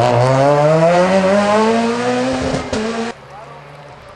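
Peugeot 207 S2000 rally car's engine revving hard as the car accelerates away, its pitch rising steadily for about two and a half seconds, then dipping briefly and running on. About three seconds in, the sound drops suddenly to something much fainter.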